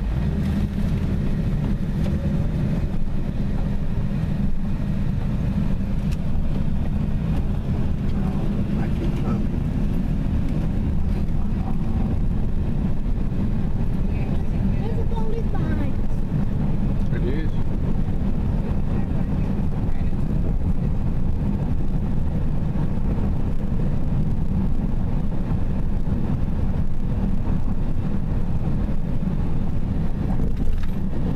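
Steady low rumble of a car driving along a street: engine and road noise heard from the moving car.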